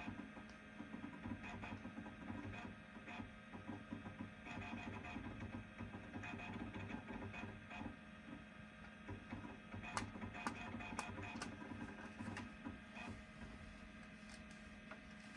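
Macintosh SE's floppy drive reading a disk while the system loads, a stuttering mechanical chatter with sharp clicks about ten seconds in, over the computer's steady hum.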